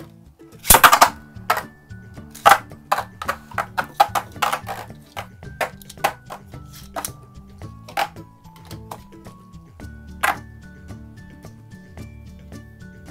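Two Beyblade Burst tops, Winning Valkyrie and Alter Chronos, spinning and clashing in a plastic stadium. A run of sharp clacks, loudest about a second in, comes thickly at first, then grows sparse after about five seconds. Background music with a steady beat plays under it.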